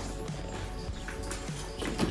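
Background music with steady sustained tones.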